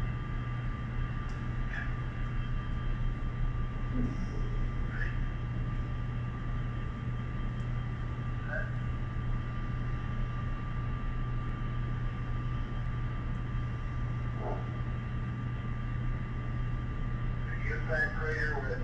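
Playback over room speakers of the Apollo 8 onboard tape recording: a steady hum and hiss with a thin high tone, broken by a few brief, faint fragments of astronauts' voices.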